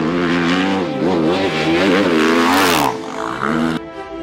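Honda CRF450 rally bike's single-cylinder four-stroke engine revving hard, its pitch rising and falling again and again as it is ridden. Near the end it holds a steadier, lower note that cuts off suddenly.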